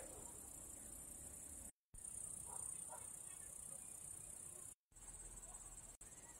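Faint, steady, high-pitched trilling of crickets in the garden. The sound cuts out completely twice, briefly, near 2 seconds and near 5 seconds in.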